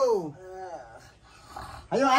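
A man's long drawn-out call to wake a sleeper trails off with a falling pitch just after the start. It is followed by a fainter short voiced sound, and a new loud call begins near the end.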